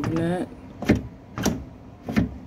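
Two sharp clacks about half a second apart from a sliding window insect screen's frame being pushed and knocked by hand in its track. The screen sits uneven in its frame.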